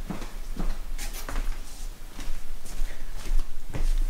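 A scattering of light knocks, thumps and rustles from someone moving about close to the microphone and picking up a small dog.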